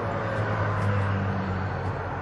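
A low droning hum, louder through the middle and easing near the end, like an engine heard at a distance.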